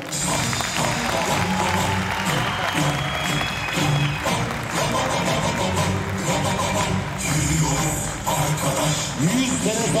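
Audience applauding over loud music with a heavy bass line.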